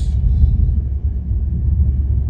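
Steady low rumble of a moving car, engine and road noise heard from inside the cabin.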